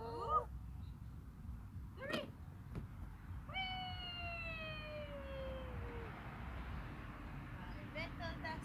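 A toddler's wordless voice. There is a short rising squeal at the start, a brief cry about two seconds in, and then one long call that slowly falls in pitch over more than two seconds.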